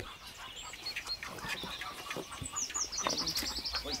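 A small bird singing in the background: scattered high chirps, then a rapid trill of short falling notes, about eight a second, in the second half. Faint clicks and rustling sit underneath.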